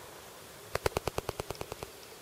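A quick run of about eleven sharp knocks, about ten a second, loudest at first and fading away, against a faint steady hiss.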